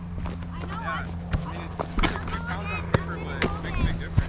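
Faint chatter from several voices in the background over a steady low hum, with a few sharp knocks scattered through.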